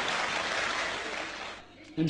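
Audience applauding, a steady even clatter that fades out near the end.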